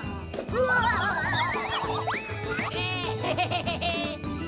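Cartoon background music with an animated character's wordless, wavering vocal noises over it. A rising slide near the middle gives way to a quick run of short, high notes.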